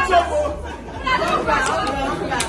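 A group of people chattering and calling out over one another, the voices dropping briefly about half a second in and picking up again.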